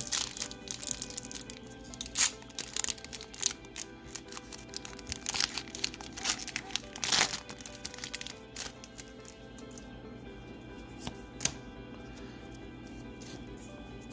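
Foil Pokémon Burning Shadows booster pack torn open and crinkled by hand: a run of sharp crackles and tearing over the first seven or eight seconds, thinning to a few clicks later on, over steady background music.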